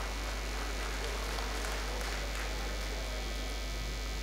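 Steady low electrical mains hum, with faint background voices.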